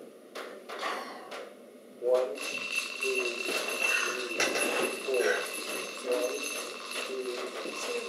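Quiet talk among several people. About two seconds in, a steady high-pitched tone starts and holds.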